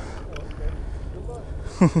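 Steady low outdoor rumble with a faint distant voice, then a man's short laugh just before the end.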